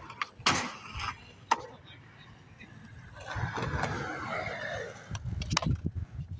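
Skateboard on concrete: a few sharp clacks of the board in the first second and a half, then a longer rushing noise from about three to five seconds, followed by more rapid clatter and rolling rumble near the end.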